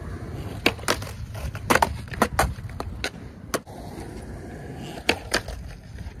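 Skateboard wheels rolling on concrete with a steady low rumble, broken by about ten sharp clacks of the board hitting the ground, bunched in the first few seconds and again near the end.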